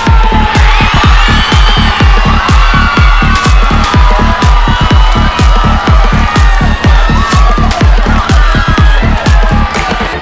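Electronic dance music with a steady beat of about two a second, with a crowd cheering and shouting mixed in under it.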